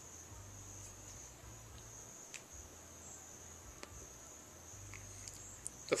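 Faint, steady chorus of crickets, with a couple of soft clicks partway through.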